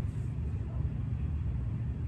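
A steady low rumble, with nothing else standing out above it.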